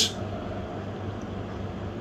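A steady low hum with faint hiss: the background room tone of an empty room, with no distinct event.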